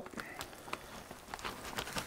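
Faint sizzling of butter and melting cheese on a hot electric griddle, with scattered small crackles and ticks.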